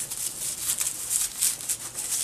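Fingers scratching and rustling through dry potting soil around amaryllis bulbs, picking at the bulbs' dry, papery dead leaves and skin: a run of irregular soft crackles and scrapes.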